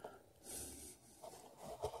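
Faint handling sounds of fingers working a thin motor wire through the base of a small EMAX brushless quadcopter motor: soft rustling and rubbing, with a light click near the end.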